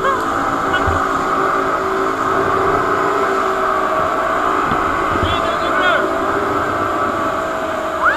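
Towing motorboat's engine droning steadily under a rush of wind on the microphone, with one brief high-pitched cry from a rider about five seconds in.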